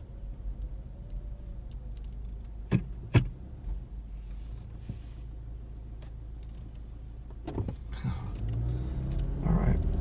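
Car engine idling at a standstill, heard from inside the cabin as a steady low rumble, with two sharp clicks about three seconds in. Near the end the rumble grows louder as the car pulls away.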